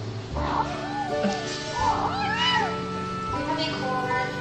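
Kitten letting out two wavering, grumbling meows while it eats, protesting being stroked at its food bowl. Background music plays under it.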